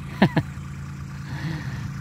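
Farm tractor engines running steadily at a distance, a low even hum. About a quarter second in, two short sharp sounds fall quickly in pitch, louder than the hum.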